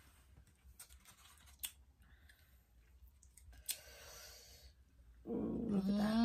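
Faint clicks and rustles of a plastic clamshell candy container being handled, then, about five seconds in, a person starts a long, steady hummed "mmm" of enjoyment while tasting the candy.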